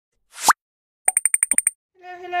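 Cartoon sound effects of an animated logo intro: a short pop with a rising pitch about half a second in, then a quick run of about seven bright ticks, about ten a second.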